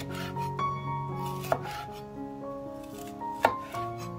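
Kitchen knife slicing a red bell pepper into strips on a wooden cutting board, with two sharp knocks of the blade on the board, about a second and a half and three and a half seconds in, over background music.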